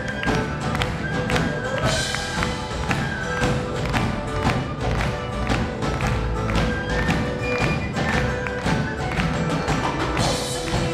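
Live Irish folk band playing an instrumental passage, a fast steady percussion beat under held melody notes, with no singing.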